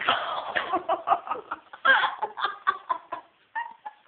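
Laughter in short, choppy bursts, giggling and cackling.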